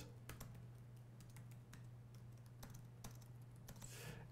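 Faint typing on a computer keyboard: a scattered run of soft key clicks over a low steady hum.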